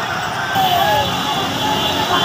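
Busy street noise of a celebrating crowd: many voices shouting together over motorcycle and auto-rickshaw engines running in slow traffic.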